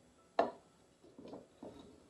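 A metal spoon stirring sticky dough in a stoneware mixing bowl. The spoon knocks sharply against the bowl about half a second in, followed by a few quieter scrapes.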